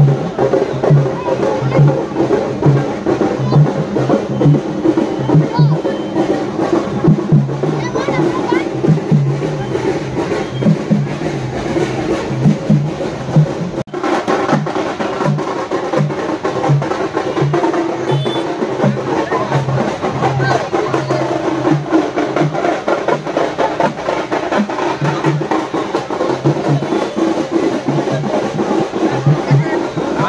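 Procession drumming: fast, steady drum beats with a crowd's voices and shouts over them. The sound breaks off for a moment about fourteen seconds in, then the drumming goes on.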